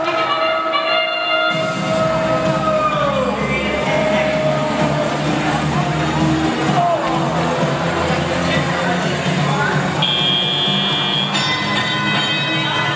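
Arena sound at a robotics competition match: music over the PA mixed with an announcer's long drawn-out call that falls in pitch over the first few seconds. A high steady tone sounds about ten seconds in for just over a second.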